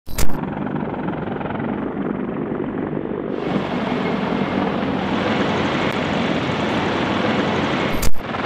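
MV-22 Osprey tiltrotor aircraft flying overhead in formation, giving a steady drone of rotors and engines. A sharp loud hit comes right at the start, and the sound turns brighter about three seconds in.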